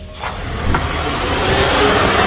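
Car driving, a rush of engine and tyre noise that starts a moment in and grows steadily louder.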